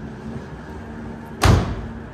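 The driver's door of a 1970 Chevrolet Chevelle is shut once, a single loud thud about one and a half seconds in.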